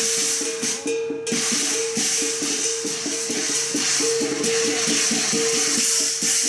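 Chinese lion-dance percussion band playing to accompany a kung fu demonstration: a fast, steady drumbeat under continuous crashing cymbals, with a ringing tone held underneath.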